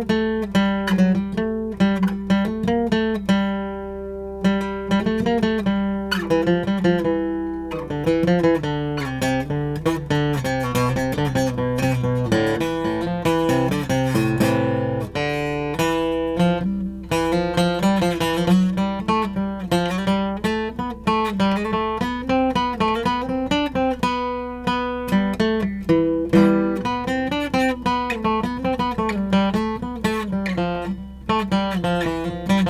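Steel-string acoustic guitar picked one note at a time in a continuous run of scale notes, played three notes per string through the natural minor (Aeolian) scale.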